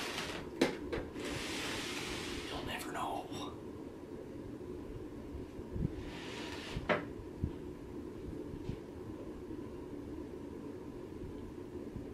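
Plastic gallon milk jugs being handled and moved on a carpeted floor, with a few soft knocks and rustling rushes, the sharpest knock about seven seconds in, over a steady low room hum.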